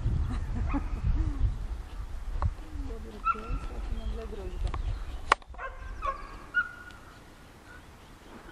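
A herding dog's faint yips and whines over low wind rumble on the microphone; the wind eases toward the end, and there is one sharp click about five seconds in.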